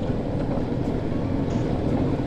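Honda CB1300 Super Bol d'Or's inline-four engine running steadily at low speed, heard from on the bike as an even low hum.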